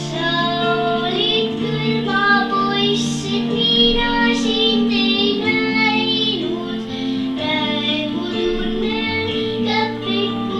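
A young girl singing a song over a recorded instrumental backing track played from a portable stereo, whose long held low notes run under her voice.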